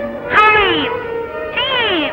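Two drawn-out vocal cries, each rising and then falling in pitch, about half a second in and again near the end, over a sustained musical drone.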